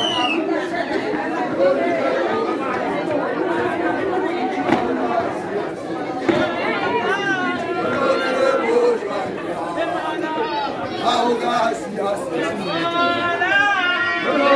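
A crowd of many people talking at once. Louder single voices call out over the chatter midway and again near the end.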